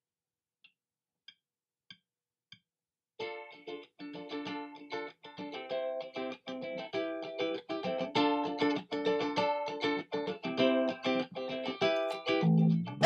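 Four faint, evenly spaced clicks counting in, then from about three seconds in a guitar picking a quick melodic intro riff of single plucked notes.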